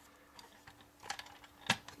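A few light plastic clicks from the 1985 Kenner M.A.S.K. Jackhammer toy vehicle being handled; the loudest click comes near the end.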